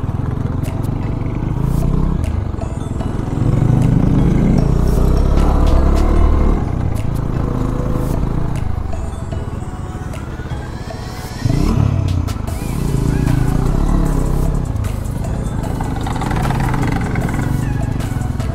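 Motorcycle engines running at low road speed, rising in pitch as they pick up speed about eleven and a half seconds in.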